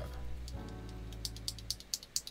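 Background music with steady sustained tones. In the second half come a string of small, sharp plastic clicks, as a box of spare mechanical keyboard switches is opened and the switches are handled.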